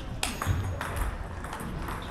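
Table tennis rally: a celluloid ball clicking sharply off the bats and the table, several hits in the first second and a half, ending the point.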